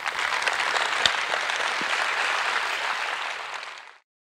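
Audience applauding at the end of a lecture, a steady, dense clapping that tapers off near the end.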